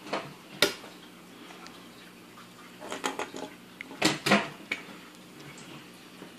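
Sticky-hand toy being flung and slapping down on a wooden tabletop: a few sharp slaps and knocks, one about half a second in, then two quick clusters around three and four seconds in.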